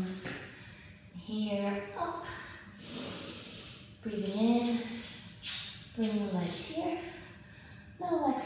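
A woman's breathing and short voiced sounds of effort as she holds a yoga leg-lift, with hissing breaths between them.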